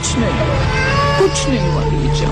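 An infant crying in short, falling wails, with a crowd's voices around it.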